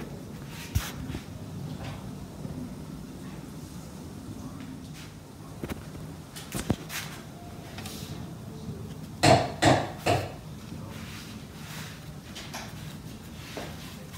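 Light handling of plates and dishes on a wooden dining table: a few scattered clicks and knocks over a low steady hum, with a louder cluster of three short sounds about nine to ten seconds in.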